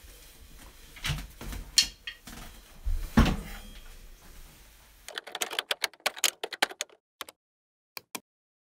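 Faint small-room noise with a few scattered knocks, then from about five seconds in a quick run of computer keyboard keystrokes lasting about two seconds over dead silence, and a mouse click near the end.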